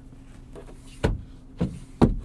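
Short sharp plastic clicks from a Mazda CX-30's overhead interior trim being handled: two about half a second apart, the first about a second in, and another at the very end, over a low steady cabin hum.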